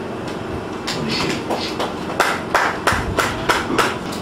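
A quick run of sharp taps or knocks, a few scattered ones at first, then about four a second from a little past halfway until near the end.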